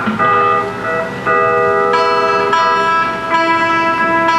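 Live country band playing an instrumental break: long held lead notes over guitar accompaniment, growing brighter about two seconds in.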